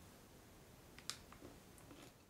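Near silence with a few faint sharp clicks, the loudest about a second in, from biting into and chewing a crunchy cereal bar made with corn and soy flakes.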